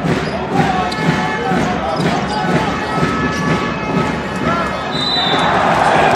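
A basketball bouncing repeatedly on a hardwood court as it is dribbled, amid unclear voices and the noise of a large arena hall.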